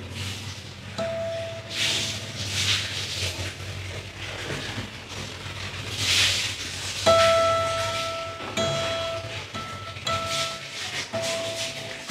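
Acoustic guitar natural harmonics: one bell-like note about a second in, then a run of about five short notes at the same pitch from about seven seconds in, each cut off quickly. Faint hissy swishes come in between.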